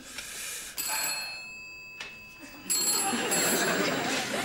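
Desk telephone ringing in repeated bursts, one about a second in and a longer one near the end.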